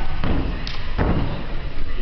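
A gymnast's hands and feet striking a sprung floor-exercise floor during a tumbling pass: a couple of thuds near the start, then the heaviest thud of the landing about a second in.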